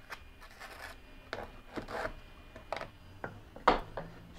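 A trowel scraping and spreading thinset mortar onto the back of a tile as it is buttered, a series of short scrapes and light taps, the loudest near the end.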